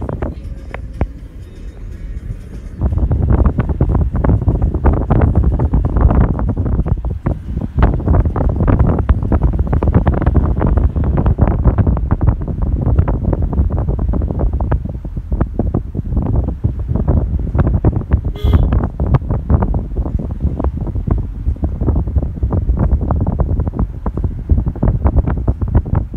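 Wind buffeting the microphone: a loud, fluttering rumble that jumps up about three seconds in and keeps on gusting.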